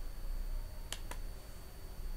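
Two sharp clicks about a second in, a fraction of a second apart: a computer keyboard key being pressed and released, over a faint steady hum.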